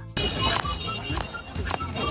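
Busy outdoor market ambience: music playing over a murmur of voices and general crowd and street noise.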